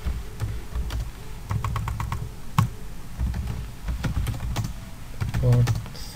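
Typing on a computer keyboard: irregular keystrokes, some in quick runs.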